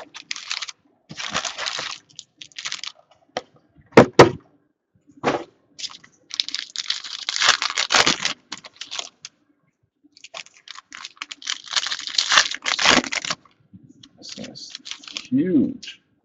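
Foil wrappers of Topps Platinum football card packs being torn open and crinkled in bursts, with cards handled. Two sharp knocks about four seconds in.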